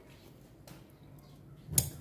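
Quiet room tone, broken near the end by one short, sharp click.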